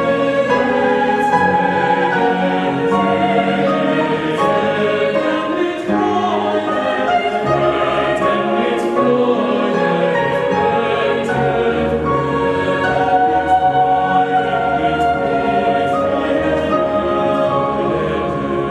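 Mixed choir singing a slow classical choral work with grand piano accompaniment, the voices holding long overlapping lines.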